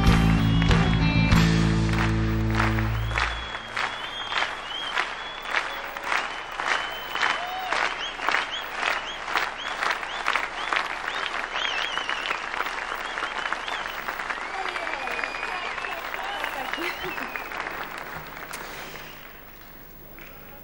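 Music ending on a held chord about three seconds in, followed by a large audience applauding with whistles. The clapping falls into time at about two claps a second, then fades out near the end.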